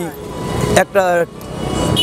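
Road traffic passing close by: a noise that swells twice in a couple of seconds as vehicles go past. A man speaks a single word between the two swells.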